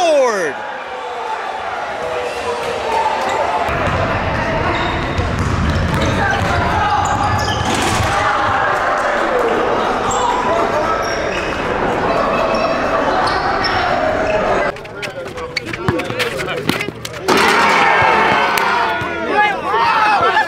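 Basketball game sound in a gym hall: a crowd of spectators yelling and cheering over a bouncing ball. It dips briefly about three quarters of the way through, where sharp knocks stand out.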